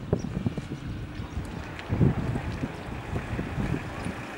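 Wind buffeting the microphone in uneven low gusts, loudest about two seconds in.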